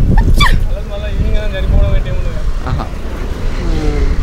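Short, drawn-out voice sounds from the interviewed young men, a brief rising exclamation and then a long wavering hum, over a steady low rumble of wind on the microphone and road traffic.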